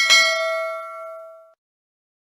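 Notification-bell sound effect from a subscribe-button animation: a bright chime struck twice in quick succession, ringing for about a second and a half before stopping abruptly. It marks the bell icon being clicked.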